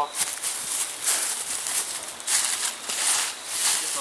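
Footsteps crunching through thick, dry fallen leaves: a person walking away, a run of uneven crunches.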